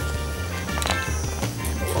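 Background music with a steady beat, over the rattling of a Hexbug Nano vibrating micro-robot bug skittering over a table and knocking into die-cast toy cars. There are a couple of sharp clicks about a second in.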